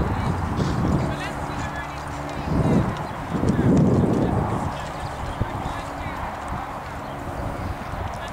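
A pony's hooves cantering on an arena surface, with a louder flurry of hoofbeats as it takes off and lands over a fence about four seconds in.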